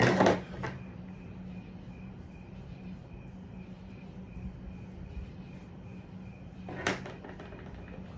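Small hard objects knocked on a desktop while a pipe is lit and smoked: a sharp knock right at the start with a smaller one just after, and a single click near the end, over a steady low hum.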